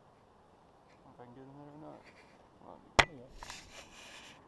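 A brief wordless voiced sound from a person, then a single sharp knock on the camera about three seconds in, followed by about a second of cloth rubbing against the microphone.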